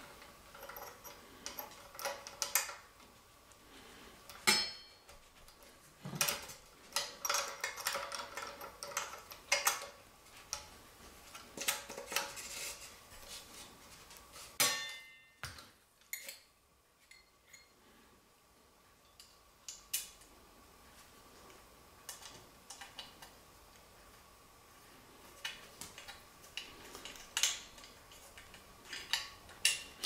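Metal parts of a 1908 Testophone brass bulb horn clinking and knocking as they are handled and fitted together: irregular small clicks and clinks, fewer through the middle stretch.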